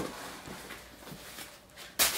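Faint rustling and handling of packing stuffing being pulled out of a new leather boot, with a short sharp click at the start.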